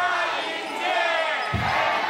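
Live band playing with sung vocals: long held sung notes over a slow kick-drum beat, one deep thump about every second and a half.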